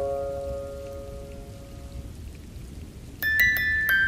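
Music-box notes ringing out and fading over a steady rain ambience, then, after a short gap with only the rain, a new music-box melody begins a little after three seconds in.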